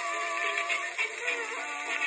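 Old 78 rpm shellac record of a 1920s dance-band fox-trot playing: several instruments carrying the melody in a thin sound with almost no bass.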